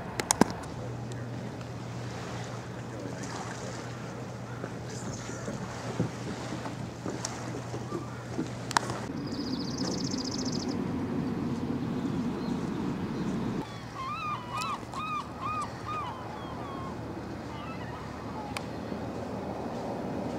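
Outdoor street ambience: a steady low rumble of traffic and wind with a few handling clicks. About fourteen seconds in, a bird gives a quick run of about six calls.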